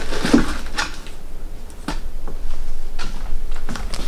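A cardboard box being opened and handled by hand: a few scattered light knocks and scrapes of the flaps and what is inside.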